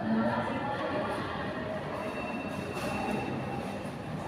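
Steady rumbling city noise, with a thin high tone held for about two seconds in the second half.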